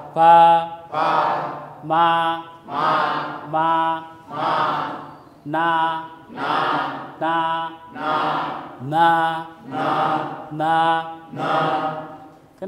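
A man's voice chanting single Dinka alphabet syllables on a flat, even pitch, one syllable just under a second apart: repeated 'pa' sounds, then 'na' sounds.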